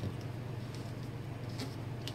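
A steady low background hum, with a few faint, light rustles and taps of hands moving on a sheet of paper.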